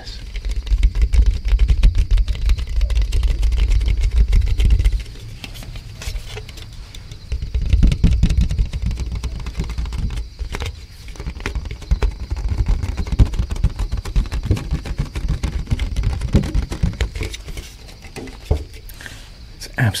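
Fingers tapping and scratching on a sturdy red plastic party plate held close to the microphone, a rapid stream of small clicks over a deep handling rumble. It eases off about five seconds in and again near the end.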